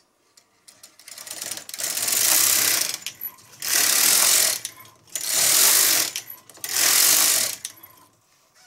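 Knitting machine carriage pushed back and forth across the needle bed, knitting four rows: four passes of mechanical clatter, each about a second long.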